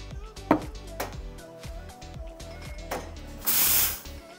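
Background music with light beats, then, about three and a half seconds in, a short loud burst of steam hiss from an espresso machine's steam wand being purged after steaming milk.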